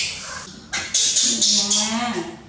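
Baby macaque crying for its milk: one call tails off at the start, then a run of four or five shrill screams follows quickly from about a second in.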